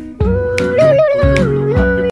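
Music from a Hindi comic birthday song: one long held melody note that steps up and down in pitch, over a few drum beats.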